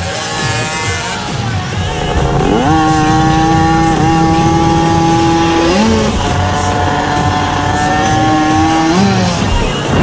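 Dirt bike engine revving high: its pitch climbs a couple of seconds in and then holds steady, climbs again around six seconds in and once more near the end. Music plays underneath.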